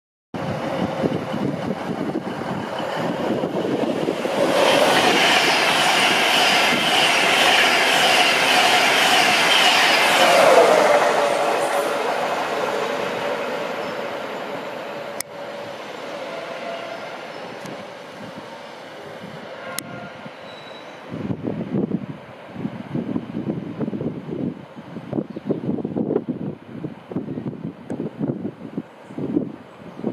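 InterCity 225 express, a Class 91 electric locomotive propelling Mark 4 coaches, passing at speed: a rushing roar of wheels and air that builds, peaks with a steady high whine for several seconds, then drops in pitch about ten seconds in as the locomotive goes by, and fades slowly as the train recedes.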